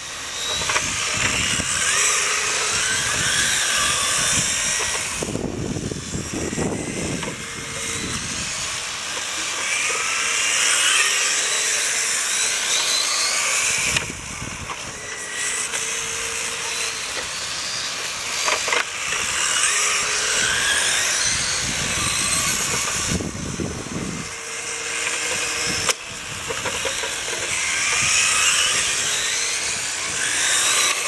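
Several radio-controlled on-road race cars running laps, their motors making a high-pitched whine that rises and falls in pitch as the cars speed past and brake for the turns. The sound swells roughly every nine seconds as the pack comes by the camera.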